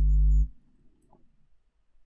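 A brief steady low hum lasting about half a second, then a few faint computer-mouse clicks.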